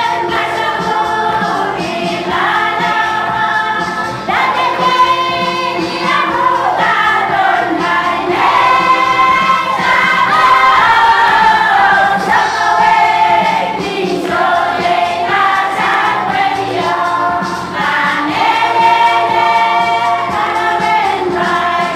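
A choir of women singing a song together in chorus, holding long notes that slide from one pitch to the next.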